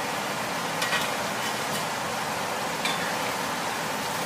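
Battered pieces deep-frying in a wok of hot oil, a steady sizzle, with two light clicks of the metal ladle and skimmer against the wok, about a second in and again near three seconds.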